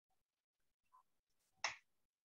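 Near silence broken by a single sharp click about one and a half seconds in: a computer mouse or keyboard click.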